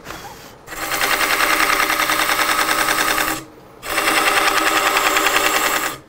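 Negative-rake carbide scraper cutting the inside of spinning basswood on a wood lathe: a loud, fast, rhythmic chattering rattle as the tool nibbles away the wood to free the inner core. It comes in two stretches, with a short break a little past halfway when the tool lifts off.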